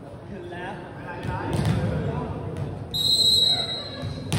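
Referee's whistle blown once about three seconds in, a single steady shrill tone lasting just under a second, over players' voices calling out in a large, echoing sports hall.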